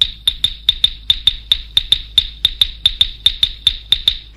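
Rapid, even series of sharp metallic ticks, each with a high ringing ping, about five or six a second, standing alone while the rest of the film song's music falls silent.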